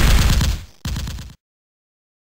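Loud, distorted gunfire that stops abruptly just under a second in, followed by a shorter, quieter burst that also cuts off sharply, then dead silence.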